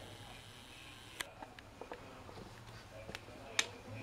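A few sharp clicks and small knocks from a camera being handled and adjusted, the loudest about a second in and near the end, over a low steady room hum.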